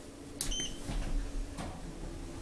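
Schindler 3300 elevator: a sharp click about half a second in with a short high beep right after it, the way a call button is acknowledged, then a low rumble starts as the elevator sets off. A second, softer click comes near the end, over a steady low hum.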